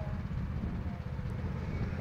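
Go-kart engine running with a faint steady drone, heard under a low rumble of wind on the microphone.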